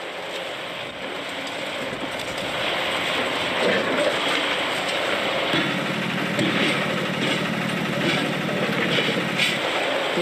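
Caterpillar excavators demolishing a concrete motorway bridge: diesel engines running under load amid a continuous clatter of breaking concrete and debris, with a few sharper knocks. A steady engine drone comes in about halfway through.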